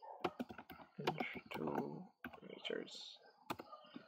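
Computer keyboard typing: a handful of scattered keystrokes, with a man's voice speaking quietly in between.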